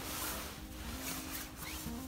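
Soft background music of held notes that step slowly from one pitch to the next, with light rustling as mushrooms are handled in a wicker basket.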